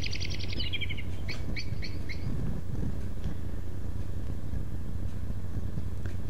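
A songbird's rapid trill falling in pitch, ending about a second in, followed by a few short separate chirps, over a steady low hum.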